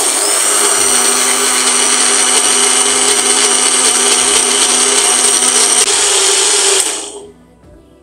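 Electric mixer grinder running at full speed, its blades grinding a mango mixture into a fine paste. It is switched off about seven seconds in and winds down.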